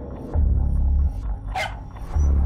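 Trailer score with a deep bass note held through much of the first second, and a dog barking once, briefly, about a second and a half in.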